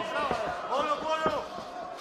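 A man's commentary voice, quieter than the surrounding commentary, with a few dull thumps.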